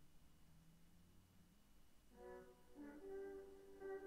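A desktop alarm clock app going off on a computer, playing its chosen alarm melody: near silence, then about two seconds in a tune of held notes starts, settling on one long note.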